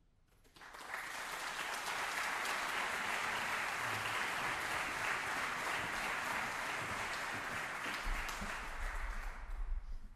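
Audience applauding in a theatre, starting abruptly about half a second in, holding steady, and dying away near the end.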